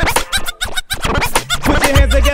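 Hip hop dance remix with DJ turntable scratching cutting rapidly over the beat.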